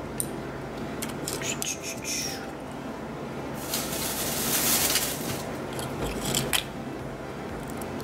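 Scallop shells being handled: hard shells clicking against each other in a few sharp taps, with a longer scraping rustle about halfway through.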